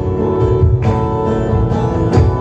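Acoustic guitar strumming chords, with a cajón played underneath as a steady low beat.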